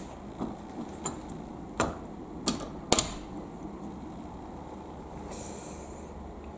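Soft, stealthy footsteps and light knocks on a wooden floor as someone creeps through a room: a handful of short clicks and knocks, the sharpest about three seconds in, then a brief rustle near the end.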